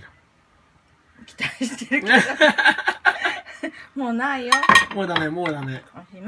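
Utensils clinking against a dish in a quick run of sharp clicks during the first half, followed by a high, wavering vocal sound in the second half.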